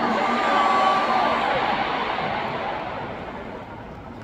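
A large concert crowd cheering and screaming, with a few high shrieks standing out, dying down steadily over a few seconds.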